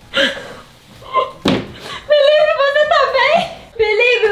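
A few short thumps, then from about halfway in a person's loud, high-pitched, drawn-out vocalizing with rising pitch, like a yell or laughter.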